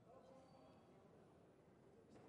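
Near silence: faint hall room tone with distant, indistinct voices.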